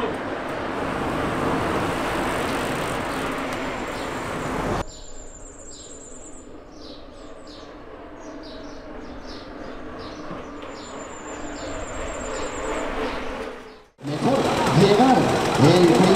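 Small birds chirping and giving high trills, repeatedly, over a quiet background, after an abrupt cut from a few seconds of steady outdoor rushing noise. Near the end a louder sound with distinct pitches starts suddenly.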